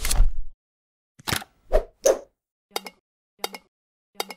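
Sound effects for an animated logo: a sharp burst at the start, then a run of five short pops, the last three evenly spaced about 0.7 s apart.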